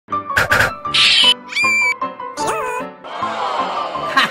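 Channel intro music with a rapid string of short comic sound effects over it: two quick clicks, a high squeak, a short pitched whistle, a wobbling pitch swoop, and a falling whoosh in the last second.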